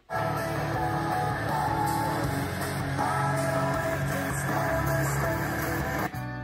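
Guitar-based music playing through a Welling GA-412 centre-channel speaker, steady and full, with most of its sound in the low and middle range.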